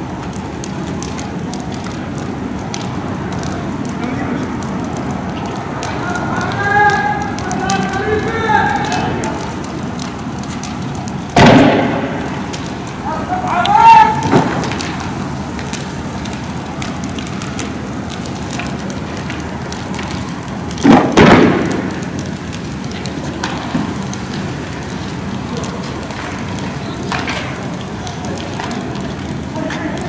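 Street fire crackling over a steady rush, with people shouting twice. Two loud bangs cut through it, the first about eleven seconds in and the second about ten seconds later.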